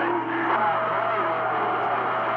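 CB radio receiver on channel 28 hissing with static after the other station stops talking, with a faint steady tone running through the noise.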